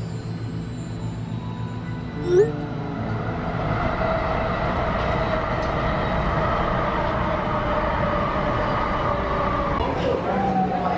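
A train running, heard from inside the car: a steady rumble with a faint whine, growing louder about three seconds in.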